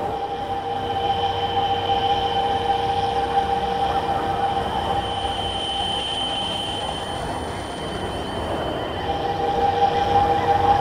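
Electroacoustic sound-art drone: several steady, high sustained tones over a rough, rumbling noise bed. The two lower tones fade out about midway and return near the end.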